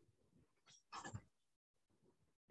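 Near silence, with one brief faint sound about a second in.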